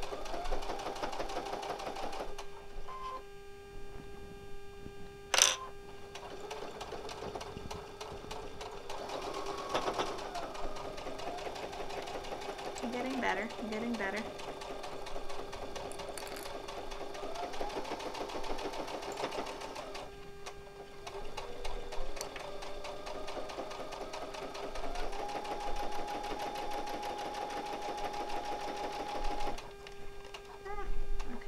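Brother computerized sewing and embroidery machine, used in sewing mode, stitching through layers of fabric under foot-pedal control. The motor whine rises in pitch and holds steady each time the pedal is pressed, and the machine stops briefly twice. There is one sharp click about five seconds in.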